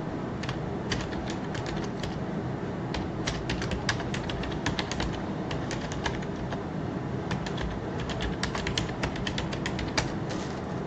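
Typing on a computer keyboard: irregular key clicks, several a second, over a steady background hiss.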